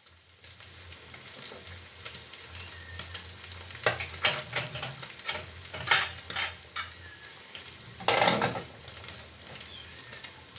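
Minced meat and onion frying in a pan on a gas stove, a steady low sizzle. Sharp knocks and clatters of kitchen utensils come around four and six seconds in, and a longer, louder clatter comes near eight seconds.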